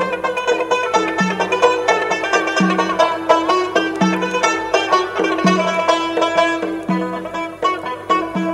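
Instrumental passage of Khorezmian Uzbek folk music. Plucked string instruments play a quick melody over a steady drone, with a low note returning about every second and a half.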